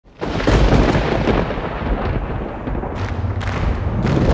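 A thunder-like rumble that starts suddenly, with a sharp crack, just after the start and then rolls on deep and noisy. Two more sharp cracks come near the end.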